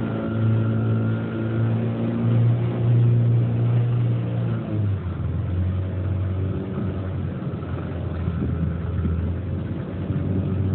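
Small tiller-steered outboard motor running steadily with the boat under way. Its pitch drops a little a little before halfway through as the engine slows slightly.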